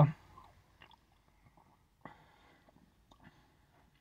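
Faint sipping and swallowing from a drink can, with small mouth clicks and a short soft noise about two seconds in.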